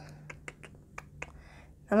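A scattering of light, irregular clicks and taps from handling small lipstick tubes and their cardboard packaging.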